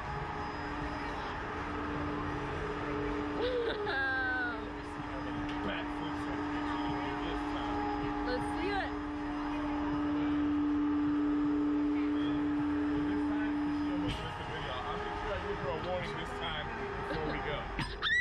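A steady low hum sounds for about thirteen seconds and then stops, over a background of outdoor noise, with a few short voice sounds from the riders. A scream starts right at the very end.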